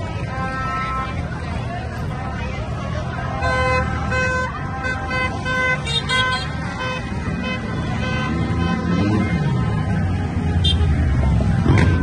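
Car horns honking in celebration, held blasts in two spells in the first half, over the steady rumble of slow-moving cars and motorbikes and the voices of a crowd.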